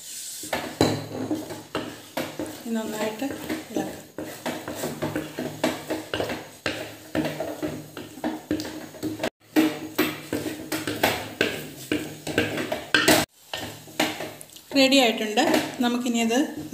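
A spoon stirring and scraping thick pumpkin halwa around a metal pot, with many quick clinks and scrapes against the pot. The sound cuts out twice for an instant.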